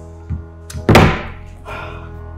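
A mobile phone put down hard on the table: a light knock, then a loud thunk about a second in, over steady background music.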